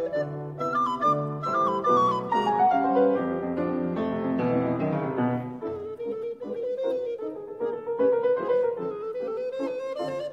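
Recorder and piano playing a fast classical sonatina movement in duet, quick-moving notes in the first half giving way to longer held recorder notes over the piano.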